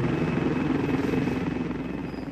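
Helicopter rotor and turbine sound, steady and slowly fading away.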